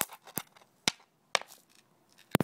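Dry nitrogen triiodide, a touch-sensitive contact explosive, going off in small sharp pops, four cracks about half a second apart.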